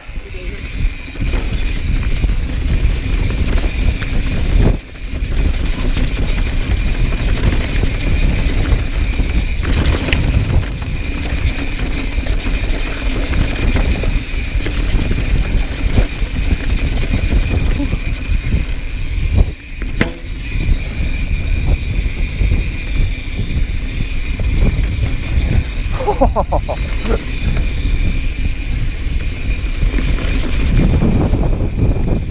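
Mountain bike descending a dry dirt trail, heard from a camera on the rider: steady rumble of wind on the microphone mixed with tyres and frame rattling over the dirt.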